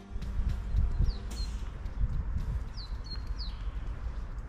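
A small bird calls several short, high, falling chirps, about a second apart. Under them run steady walking footsteps on stone paving, with a low rumble of wind on the microphone.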